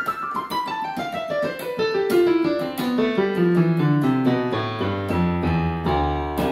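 Yamaha PSR-540 keyboard in a piano voice playing a fast scale run downward, note by note at about five notes a second, from the high register to the low bass over several octaves.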